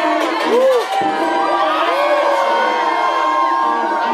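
Nightclub crowd cheering and whooping, with shrieks that rise and fall, over continuing music.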